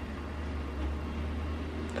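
Steady low hum with a faint even hiss, a room's background noise.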